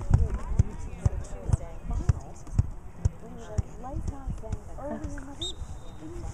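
Indistinct chatter of spectators and players at an outdoor soccer field, with irregular short low thumps scattered through it.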